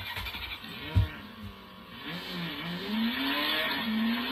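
Battery-powered light-up toy musical drum: a single drum-pad thump about a second in, then the toy's speaker plays an electronic sound effect, a wavering tone that slowly rises in pitch over a hiss, growing louder from about halfway.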